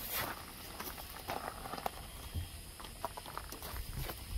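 Footsteps and handling noise as the phone is moved around the truck: scattered soft clicks and rustles.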